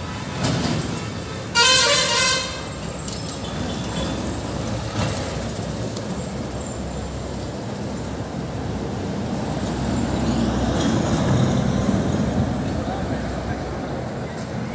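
A vehicle horn honks briefly about two seconds in, loud over steady road-traffic noise; a vehicle drives past near the end.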